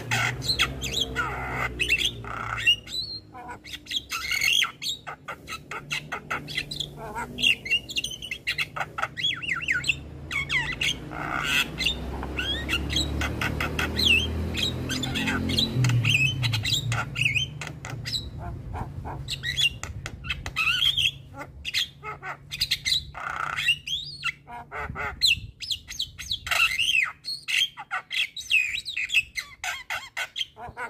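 Javan myna singing energetically: a rapid, varied stream of harsh squawks, chirps and whistles with few breaks. A low rumble runs underneath for about the first half.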